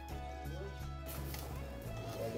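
Quiet background music, held notes over a steady bass line.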